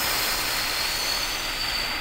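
A man's long, slow exhale, breathed out close to a clip-on microphone as a steady breathy rush with a faint high whistle in it. It is the release of a held breath in a Valsalva-style breathing exercise.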